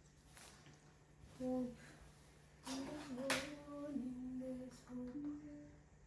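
A woman humming a slow tune quietly in a small room: a few held, gently bending notes starting about a second and a half in. There is a single sharp click near the middle and a faint steady electrical hum underneath.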